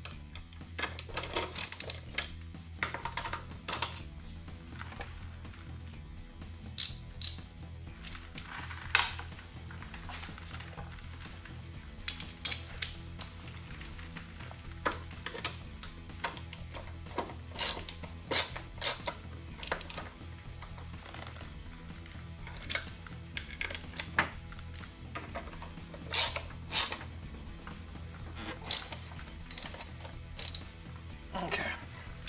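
Background music with a steady low bed, over scattered sharp metallic clicks and clinks of hand tools and nuts while wheel nuts are tightened on an ATV's front wheel hub.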